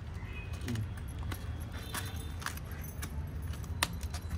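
Cabbage leaves crackling and snapping as they are pulled apart by hand, with metal bangles jingling on the wrists in a few short sharp clicks, over a low steady hum.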